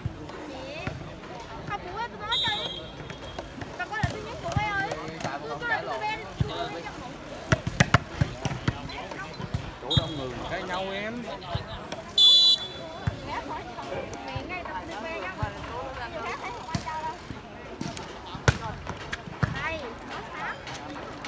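Spectators chattering and calling out around an outdoor volleyball game, with sharp smacks of the ball being struck, several in quick succession just before the middle and one near the end. A referee's whistle blows briefly about two seconds in, again around ten seconds, and loudest at about twelve seconds.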